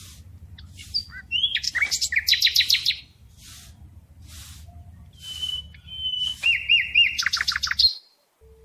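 Songbird chirps and rapid trills in two bursts, the first about a second in and the second from about five seconds, with the bird the loudest sound. Under them run soft, regular swishes of a small grass broom sweeping a dirt floor.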